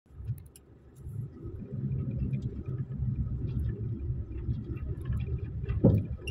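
Low rumble of a vehicle driving slowly over a rough, rubble-strewn dirt road, heard from inside the cabin, with scattered light rattles and one louder thump near the end.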